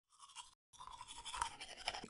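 Faint scrubbing of a toothbrush against teeth, broken off briefly about half a second in.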